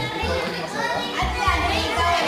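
Children's voices chattering and calling out over background music with a steady, regular bass beat.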